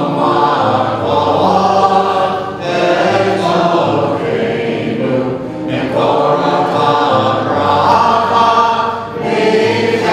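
Congregation singing a healing song together with piano accompaniment, in sung phrases broken by short breaths about every three seconds.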